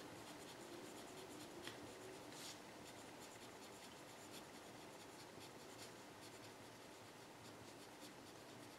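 A pen writing on paper, faint scratching in many short quick strokes as words are written out.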